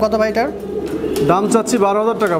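Domestic pigeons cooing in a loft, several overlapping coos rising and falling in pitch.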